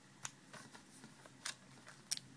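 Faint handling of foil-wrapped trading-card booster packs as one is lifted off a stack, with two short clicks, one just after the start and one about one and a half seconds in.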